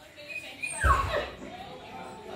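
A puppy's short whine about a second in, falling in pitch. It is whining for a treat it is hesitating to jump down to.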